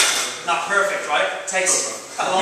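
A loaded barbell with bumper plates set down on the rubber gym floor: one sharp clank right at the start, followed by talk.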